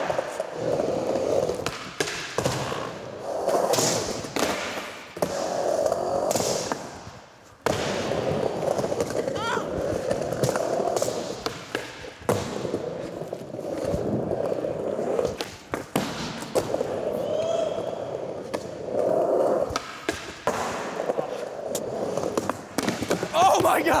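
Skateboard wheels rolling over wooden ramps and a smooth floor, broken by repeated sharp clacks of the tail popping and the board landing.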